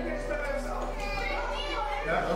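Children talking and playing in the background, several voices at once with no clear words.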